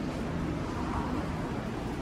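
Steady indoor ambience: an even low rumble and hiss with no distinct sounds standing out.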